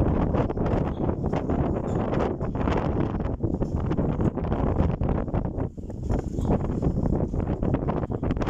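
Wind buffeting the phone's microphone: a steady low rumble with constant crackling gusts.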